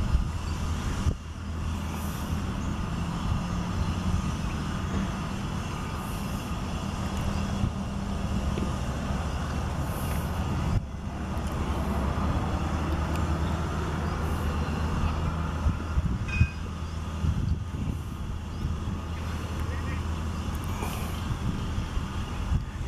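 A large engine running steadily, a low even hum with two brief dips, about one second and about eleven seconds in.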